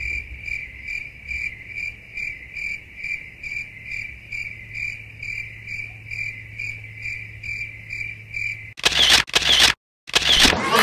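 A steady, high-pitched pulsing trill, about two to three pulses a second, over a faint low hum, cut off near the end by a loud burst of noise.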